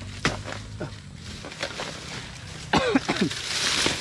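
A bolo knife chops into dead banana stalks and dry leaves, with sharp strikes and leaf rustling. Just under three seconds in comes a short vocal sound that falls in pitch, like a grunt.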